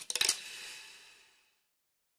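Short metallic logo sound effect: a quick cluster of sharp clinking hits at the start, ringing away over about a second and a half.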